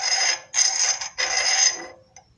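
The edge of a square steel lathe tool bit scraped along the turned surface of a steel bar: three scraping strokes with a thin high ringing through them. The scraping sound tells how rough or smooth the lathe-turned finish is.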